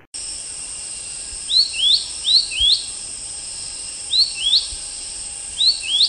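Nature ambience that starts suddenly: a steady high insect drone, crickets by the tags, with a bird's short rising chirps coming in four pairs.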